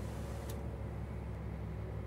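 Low, steady engine hum of a Scania S500 lorry moving off, heard from inside the cab, with a faint click about half a second in.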